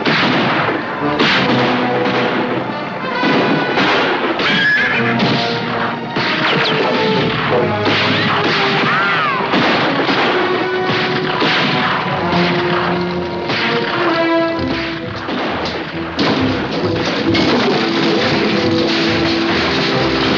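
Orchestral film score playing under a string of sharp bangs and thuds from gunfire and blasts, with galloping horses.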